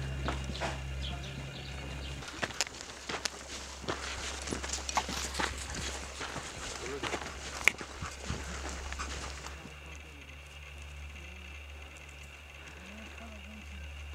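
Outdoor field audio of people on the move: irregular footsteps and small knocks and clicks of gear, with faint voices in the background. A low steady hum is heard for the first two seconds and again over the last few seconds.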